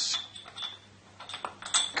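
Light metal-on-metal clicks and clinks as a steel cog and shaft are handled and fitted together inside a Harrison M300 lathe apron, a scatter of small taps with a brief ring, most of them in the second half.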